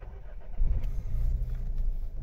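The SEAT Ibiza's 1.0 TSI three-cylinder petrol engine starting from the push button: a brief crank, then it catches, is loudest about half a second in, and settles into a steady raised idle of just over 1,000 rpm, heard from inside the cabin.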